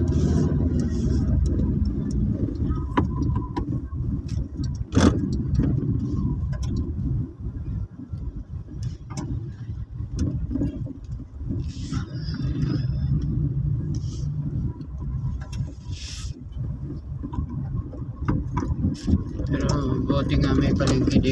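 Car engine and road noise heard from inside the cabin as the car drives slowly: a steady low rumble, with a sharp click about five seconds in.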